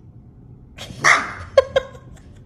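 A small dog barking: one harsh, loud bark about a second in, then two quick, short yaps.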